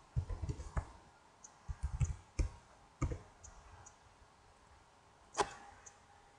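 Computer mouse clicks and a few keyboard keystrokes, spaced out, with the sharpest click about five and a half seconds in.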